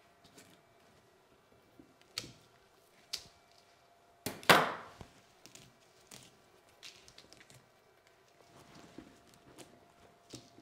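Bonsai cutters snipping through Japanese black pine twigs: a few sharp, separate clicks, with one louder, longer cracking cut about halfway through.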